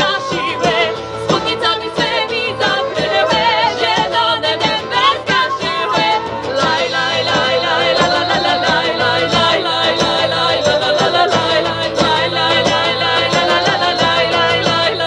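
Folk band playing live: flute, acoustic guitars, accordion and drum kit on a steady beat, with women singing over them.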